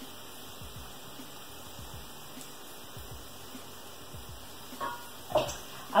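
Chopped onion, leek and peas frying in olive oil in a skillet: a faint, steady sizzle, with a couple of brief knocks near the end.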